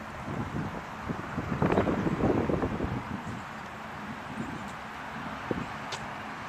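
Wind buffeting a handheld camera's microphone outdoors: a steady hiss with irregular low rumbling gusts, strongest about two seconds in.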